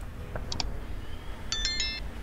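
Light, high chime notes: two short pings about half a second in, then a quick run of several ringing notes near the end.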